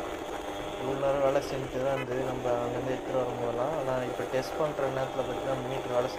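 A man talking in Tamil over a Yamaha RX100 motorcycle riding at road speed, its engine beneath the voice.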